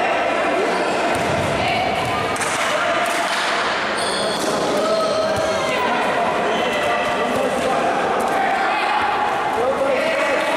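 Futsal being played on a hard indoor court: players' voices call and shout across an echoing hall, over the ball being played and shoes squeaking briefly on the floor.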